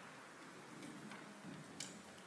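A few faint taps and clicks of balls and hands on the wooden pallet board, with a sharper click near the end.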